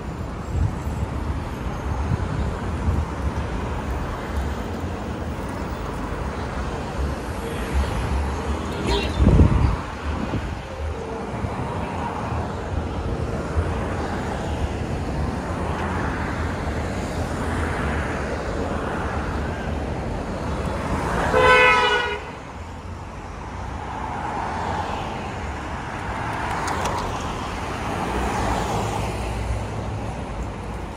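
City street traffic with cars passing close: a loud vehicle pass with falling pitch about a third of the way in, then a car horn honking once for about a second about two-thirds of the way through.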